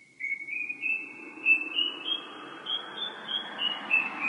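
A single high, pure whistled tone moving slowly in small steps, rising over the first two seconds and then stepping back down, like a slow whistled tune, over a faint hiss.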